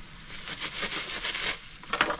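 Plastic bag crinkling and rustling as a lettuce is handled and worked out of it, stopping about one and a half seconds in.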